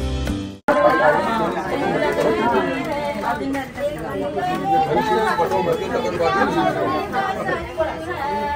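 Background music that fades and cuts off about half a second in, followed by many women's voices talking over one another in a lively group chatter.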